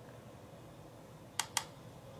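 Two quick, sharp clicks about a fifth of a second apart, about one and a half seconds in, from a makeup brush and eyeshadow palette being handled, over a steady low room hum.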